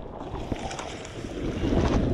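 Wind rumbling on the microphone over water lapping against a boat hull, with a few faint ticks.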